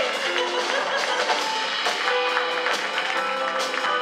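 Live band playing an Abruzzese folk song in a jazz-style arrangement, with a drum kit keeping time through repeated sharp strikes and a double bass underneath.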